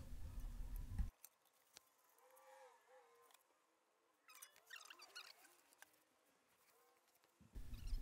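Near silence: faint background noise that cuts off about a second in, then a few faint, wavering high chirps in the middle.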